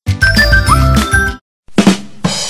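Short musical sting with bright chimes over a deep low note, lasting about a second and a half and cutting off suddenly, followed by a brief noisy burst near the end.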